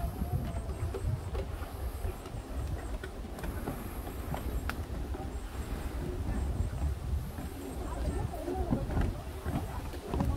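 Footsteps of several people walking down wooden steps, irregular knocks over a steady low rumble, with visitors talking in the background.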